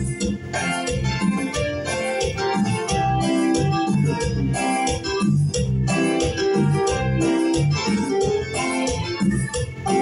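Instrumental backing music with an organ-like keyboard melody over a steady beat, played through PA speakers, with no singing.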